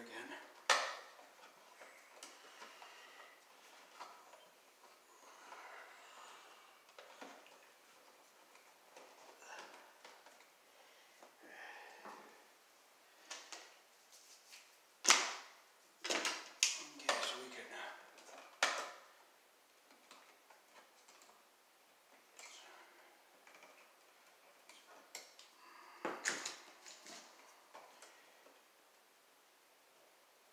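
Hand tools and copper wires being worked at an electrical box: scattered clicks and snaps over light rustling. The loudest sharp snaps come in a cluster about halfway through and again later on.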